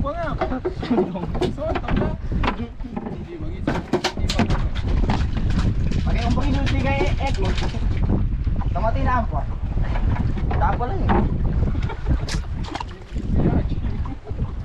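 Wind rumbling on the microphone in a small open boat at sea, with brief indistinct voices now and then.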